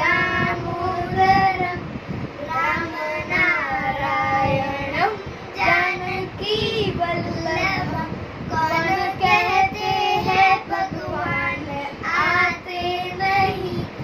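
A child's voice singing a Hindi Krishna bhajan unaccompanied, in phrases with long held, wavering notes.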